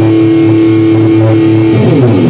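Electric guitar holding a sustained low chord, with a higher note sounding on and off above it, then moving into quicker picked notes near the end.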